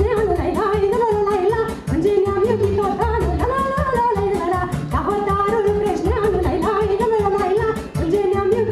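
A woman singing a Romanian folk song through a sound system, with band accompaniment and a quick, steady dance beat.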